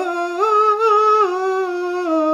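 A man's voice singing a long, wordless held note with a slight waver, stepping up in pitch about half a second in and back down a little past the middle.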